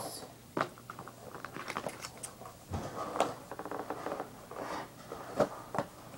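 Plastic toy packaging being handled and pried at: scattered sharp clicks and crinkling, with a busier stretch of crackling in the middle.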